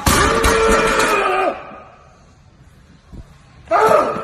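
A man's loud, drawn-out yell of exertion while a loaded barbell is dropped, its plates thudding and bouncing on the gym floor early on. Then fairly quiet, with a loud burst of noise just before the end.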